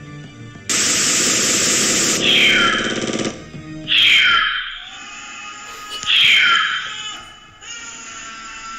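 The soundtrack of an amateur dinosaur-war video: faint music, then a loud burst of harsh noise lasting about a second and a half, then three high shrieks falling in pitch, about two seconds apart.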